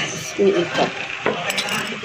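Light clicks and knocks of a hard plastic turntable organizer being handled.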